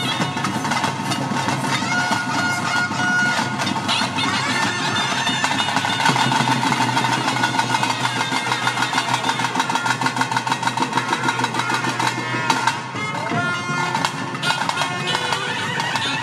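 Traditional bhuta kola ritual music: a double-reed pipe of the nadaswaram type plays a winding melody over fast, steady drumming.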